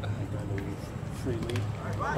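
Quiet conversation among nearby spectators over a steady low hum, with a faint sharp pop about one and a half seconds in as the pitch lands in the catcher's mitt.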